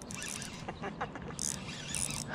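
Fishing reel being cranked to bring in a hooked bass: an irregular run of small mechanical clicks and rasps, with sharper scrapes about one and a half seconds in and near the end.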